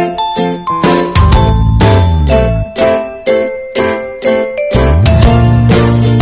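Outro music: bright chiming notes struck in quick succession over a deep bass that slides in pitch.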